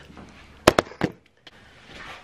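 A few sharp knocks in quick succession, two close together about two-thirds of a second in and another near one second, then a brief dip to near quiet.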